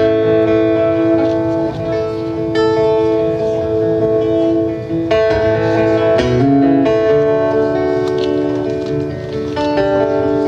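Acoustic guitar strummed and picked, playing a song's instrumental intro, with the chord changing every couple of seconds and the notes ringing on between strums.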